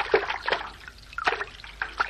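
Water splashing and dripping in a run of irregular small splashes: a sound effect of a duck paddling in water as it practises swimming.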